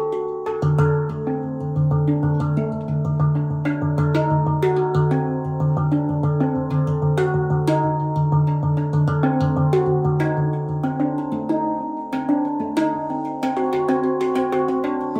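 Stainless steel handpan tuned to D Hijaz played by hand: quick percussive strikes mixed with melody, each note ringing with metallic overtones. A deep low note rings underneath for most of the passage and fades out near the end.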